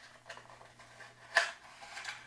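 A small cardboard product box being opened and its plastic insert tray slid out: soft rustling and scraping of card and plastic, with one sharp click about one and a half seconds in.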